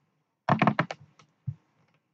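Clicking at a computer: a quick run of four sharp clicks about half a second in, then two single clicks, from keys or buttons being pressed to stop the screen recording.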